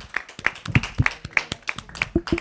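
A small audience applauding: a run of distinct, quick handclaps from a handful of people.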